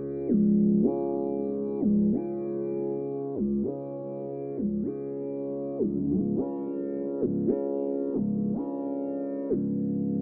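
Synthesizer keyboard music: sustained chords, each held for about a second, sliding in pitch into the next.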